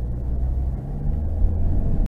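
A car's engine and road noise heard from inside the cabin, a steady low rumble while driving at low speed.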